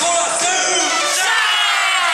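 A yosakoi dance team shouting together, many voices in one long call that rises in pitch in the second half, in a break in the dance music.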